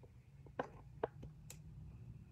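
A few faint, scattered clicks from handling a battery-operated light-up decoration and working its on/off switch, over a low steady room hum.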